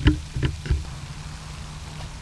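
A few knocks and bumps from the camera being handled in the first second. Then the steady rushing splash of the pond's spray fountain falling back onto the water.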